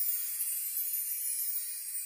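A high, hissy shimmer sound effect that slowly fades, a sparkle cue for a diamond necklace being revealed.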